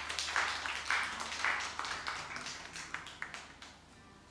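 A small audience applauding, the individual claps thinning out and dying away by about three seconds in.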